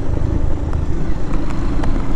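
Motorcycle engine running steadily at low riding speed under a dense low rumble, with a few faint clicks scattered through it.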